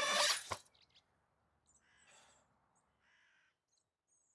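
Score music ends with a loud swell and a sharp hit, followed by near silence in which a crow caws faintly twice.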